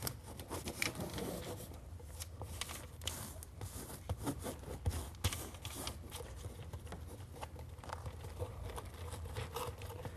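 Gloved hands pressing and smoothing creped flexible flashing tape around a round vent pipe on housewrap: faint, irregular crinkling, rustling and small scrapes of the tape and wrap, over a low steady hum.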